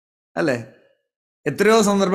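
A man's short sigh-like voiced exhalation, falling in pitch and trailing off into breath, about half a second in, followed by his speech starting again.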